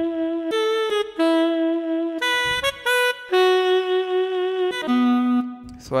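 Yamaha PSR-SX900 keyboard's saxophone voice playing a slow melody one note at a time, most notes held about a second, with a lower note near the end.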